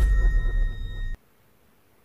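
Edited-in magic-blast sound effect: a deep boom-like rumble with a high steady ringing tone over it, which cuts off abruptly about a second in, leaving only faint hiss.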